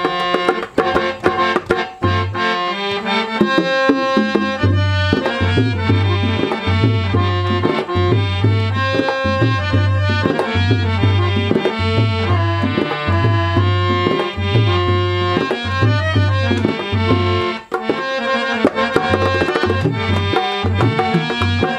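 Harmonium playing a melody in held, reedy notes over hand-drum accompaniment from a rope-laced barrel drum and a small tabla-style drum. Deep drum strokes keep an even beat, with quicker finger strokes between them, and the deep strokes drop out briefly a little before the end.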